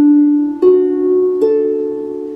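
Harp strings plucked one at a time: three notes stepping upward, D, F sharp and A, which outline a D major chord. Each note is left to ring on under the next.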